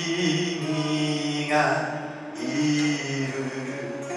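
A man singing a Japanese song in long held notes, accompanying himself on acoustic guitar.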